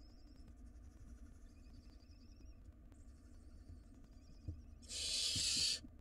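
Barn owl nestling giving one loud, harsh hissing screech about a second long near the end, with faint high wavering calls before it.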